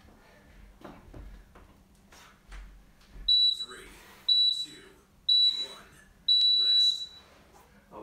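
Interval timer countdown beeps: three short high beeps a second apart, then a longer final beep marking the end of the 30-second work interval.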